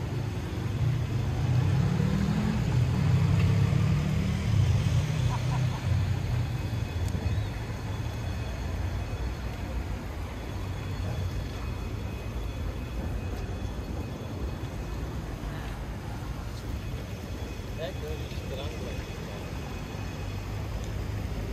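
City street at night: a steady low traffic rumble that swells over the first few seconds as an engine passes with a rising pitch, then settles. Scattered, indistinct voices of passers-by are also heard.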